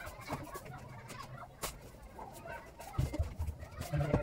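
Birds calling in the background, with scattered sharp clicks and a few low thumps about three seconds in.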